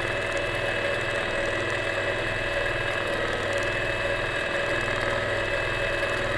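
Longarm quilting machine running steadily while stitching free-motion: a constant motor hum with a fast, even needle rhythm.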